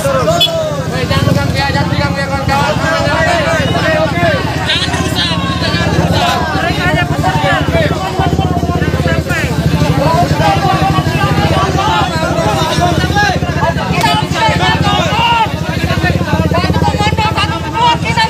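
Many voices shouting and talking over one another in a crowd, with a truck's diesel engine idling in a steady low hum underneath.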